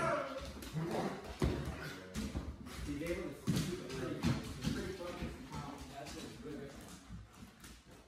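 Low, muffled talking mixed with a dog whimpering, and a few sharp clicks of claws and footsteps on a hardwood floor.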